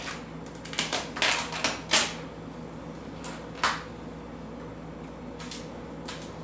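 Adhesive vinyl wrap film crackling and rustling as it is pulled tight and worked over a refrigerator door edge with a plastic squeegee. A cluster of short crackles comes about a second in, then a few single ones later.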